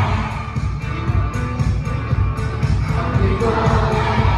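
Loud live amplified music with a heavy bass beat and a steady ticking cymbal; a singer's voice on the microphone comes in strongly near the end.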